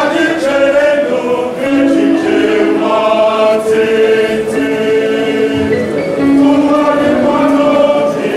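Mixed choir of men and women singing an Igbo Easter hymn in several parts, moving through long held notes.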